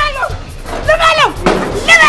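A woman's high voice crying out in repeated wails about once a second, each one falling steeply in pitch, over background music with a drum beat.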